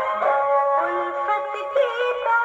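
A 78 rpm shellac record of an orchestrated Hindi film song playing through an acoustic horn gramophone. It has held, layered notes and little bass.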